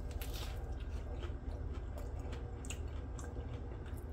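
A man chewing a bite of a breaded, cream-cheese-stuffed jalapeño popper dipped in blue cheese dressing: faint, irregular small mouth clicks.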